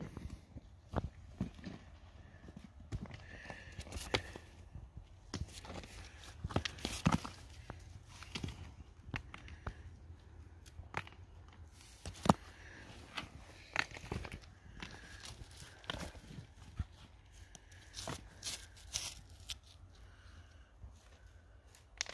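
Rocks being handled and shifted: scattered, irregular light knocks and clatter of stone on stone, with small scrapes of a gloved hand on rock.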